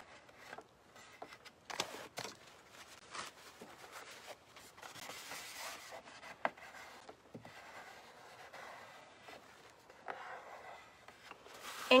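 Faint rubbing and scraping as decoupage paper on a tray is smoothed flat, first with a flat smoothing tool and then with a cloth wiped over the surface, with a few light clicks along the way.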